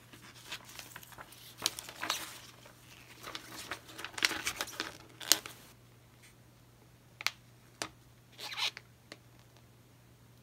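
Thin plastic sheet crinkling and rustling as it is handled, in a run of crackles through the first six seconds, then a few separate sharp clicks and one short rustle near the end.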